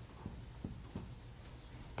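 Dry-erase marker writing numerals on a whiteboard: a few faint, short strokes.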